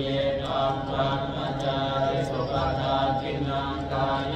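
Buddhist chanting in Pali, voices holding a steady low pitch and running on without a pause.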